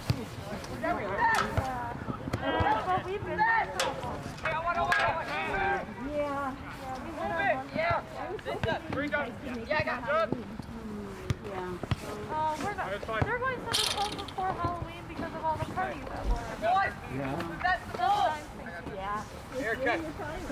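Players calling out to each other across a soccer field: several distant shouting voices overlapping, with scattered knocks and a brief high-pitched sound about fourteen seconds in.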